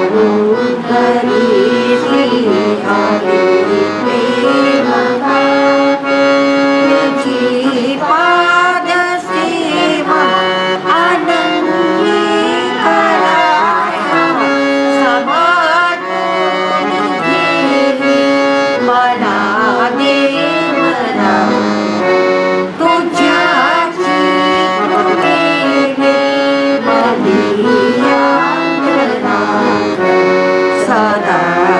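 Harmonium playing a devotional bhajan melody continuously over held low notes, with some sliding notes in the melody line.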